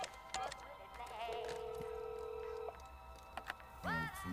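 Telephone dial tone, a steady single-pitched hum about a second and a half long, after a desk phone's handset is lifted off its cradle. Quiet film music plays underneath.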